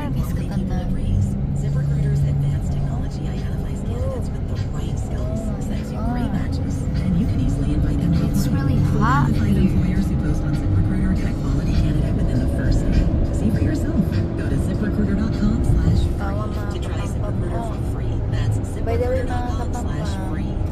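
Inside a moving car: a steady low road-and-engine rumble fills the cabin, with a car radio playing talk and music under it.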